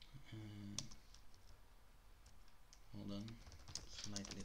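Computer keyboard keystrokes: a sharp key tap about a second in and a quick run of taps near the end. A man gives a short 'um' twice in between.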